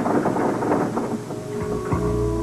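A thunder sound effect: a crackling roll that is densest in the first second and then thins out, over background music.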